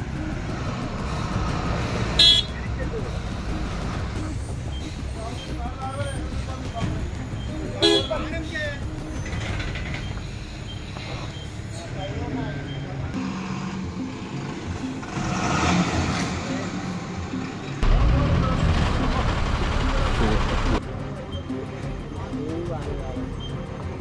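Diesel engines of a heavily loaded lorry and a bus running at low revs as they creep past each other at close quarters, with a vehicle horn toot. There are two sharp knocks, one about two seconds in and one about eight seconds in. About eighteen seconds in an engine grows louder for around three seconds, then drops off suddenly.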